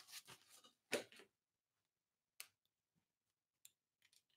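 Near silence broken by four faint clicks and taps from a pen being handled, the loudest about a second in.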